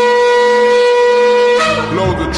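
A shofar blast: one long, loud held note that stops about a second and a half in. A faint low steady tone lies under it, and music begins near the end.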